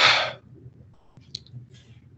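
A man drawing a short breath through the mouth at the start, then faint mouth clicks in the pause before he speaks again.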